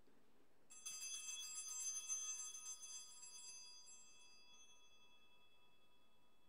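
Altar bells rung at the elevation of the chalice during the consecration. A cluster of small bells rings repeatedly for about three seconds, starting just under a second in, then rings out and fades away.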